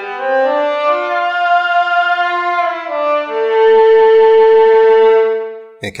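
Software-synth cello patch (a lowpass-filtered, pulse-width-modulated pulse wave in Surge XT) played as a short monophonic phrase, with notes sliding up in pitch. From about halfway through, one note is held with a strong, bright harmonic standing out that sounds vocal, like a human voice, before it fades away just before the end.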